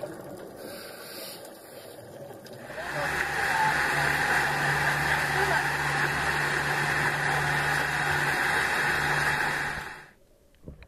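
Muffled underwater sound at first. Then, from about three seconds in, a boat's engine running with a steady hum and rushing water and wind noise, which cuts off suddenly at the end.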